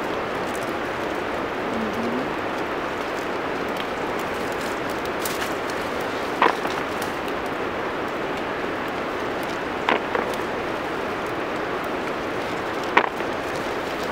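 Ripe coffee cherries being picked by hand from a coffee bush: three short, sharp snaps of cherries and twigs, about six, ten and thirteen seconds in. Under them runs a steady rushing outdoor hiss.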